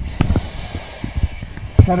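Air hissing in a firefighter's breathing-apparatus mask as the wearer breathes, fading about a second in, with a few short low knocks and bumps.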